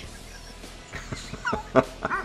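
Doberman giving a few short, high yips and yelps in the second half, one sharper than the rest near the end.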